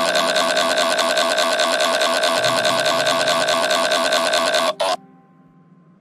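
Computer text-to-speech voice drawing out one long 'waaaa', a held, evenly buzzing vowel at a steady pitch that cuts off suddenly about five seconds in.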